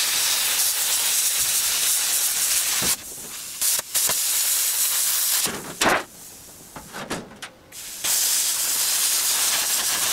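Cutting torch hissing steadily as it cuts through scrap steel. It stops briefly about three seconds in, then stops again for a couple of seconds around the middle, where a single sharp clank sounds as a cut piece falls, before the hissing cut resumes.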